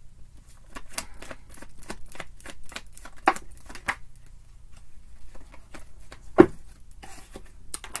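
A deck of tarot cards being shuffled by hand: a rapid, irregular run of crisp card clicks and flicks, thinning out in the second half, with one louder snap of a card about three quarters of the way through.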